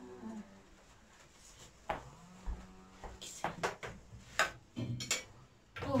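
Light clinks and knocks of dishes and cutlery on a metal serving tray, a handful of scattered strikes through the middle and latter part.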